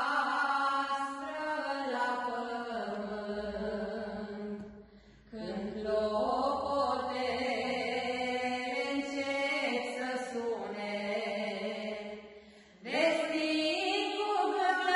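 Two women singing a Romanian religious song in long, held notes, with short breaks about five seconds in and again near the end.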